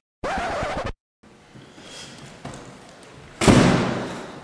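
A brief sound falling in pitch about a quarter second in. After a short silence and faint room noise, a door bangs loudly near the end and the sound dies away.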